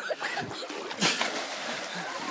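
Water splashing as a boy on a rope swing drags his feet through the river, with a brief louder splash about a second in.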